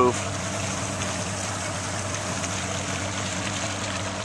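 The engine of a 26-foot motorboat running steadily underway: an even low drone with water and wind hiss over it.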